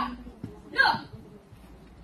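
One short, sharp shout from a taekwondo class, about a second in.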